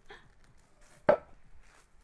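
A single sharp knock about a second in as a wooden stool takes someone's weight when they sit down on it, with a few faint soft sounds around it.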